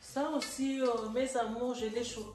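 A woman's voice.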